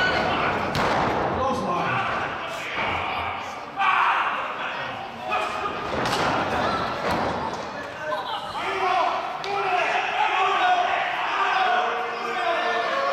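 Wrestlers' bodies slamming onto the wrestling ring's mat: several sudden thuds, the loudest about four seconds in. People's voices talk and call out throughout.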